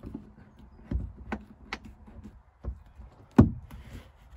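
Plastic sun visor being screwed into its roof mounting and pressed up against the headliner: a handful of separate knocks and clicks, the loudest about three and a half seconds in.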